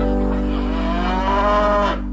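A water buffalo lows once: a long call that rises in pitch, then levels off and is cut off suddenly near the end. Steady background music plays underneath.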